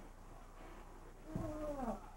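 A house cat meowing once near the end, a short call falling in pitch, over a faint steady hum.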